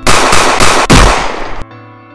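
A rapid burst of handgun gunfire, about four or five loud shots in quick succession, cutting off suddenly after about a second and a half. A held music chord rings on underneath and fades.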